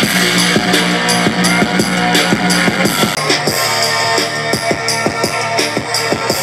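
Rock music with a steady drum-kit beat and guitar, played back on a small portable Bluetooth speaker as a sound test.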